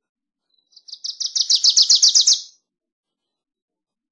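Wilson's warbler singing one song: a rapid chatter of about a dozen short down-slurred notes that grows louder, lasting about two seconds and cutting off sharply.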